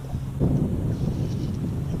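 Wind buffeting the microphone: a rough low rumble that starts suddenly about half a second in and carries on.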